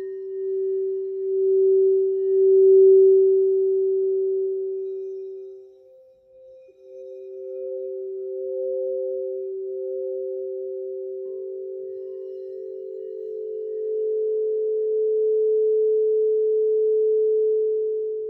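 Small 8-inch crystal singing bowls played with mallets, ringing with long, steady tones. One tone swells and fades over the first six seconds, then sounds again. A higher tone joins about four seconds in and wavers, and a third tone comes in about eleven seconds in, so two or three bowls ring together near the end.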